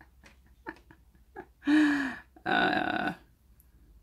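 A woman's short wordless vocal sound, a pitched 'mm' about halfway through, followed right after by a breathy exhale. Faint small ticks come before it.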